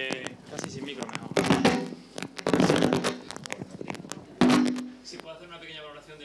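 Speech only: a man talking in Spanish into a press-conference microphone.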